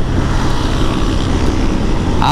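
Motorcycle cruising at about 95 km/h on an expressway: a steady engine hum under a loud, even rush of wind and road noise.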